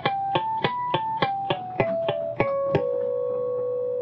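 Electric guitar playing a B minor scale in natural harmonics over the 3rd, 4th and 5th frets, one picked note at a time. The notes climb to a top note, step back down, and the last note rings on for over a second.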